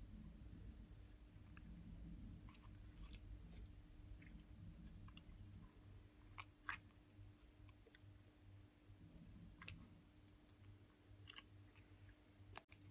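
Near silence with faint, scattered small wet clicks and crackles of a knife and fingers hooking rib bones out of a raw fish fillet, the sharpest pair about six and a half seconds in, over a low steady hum.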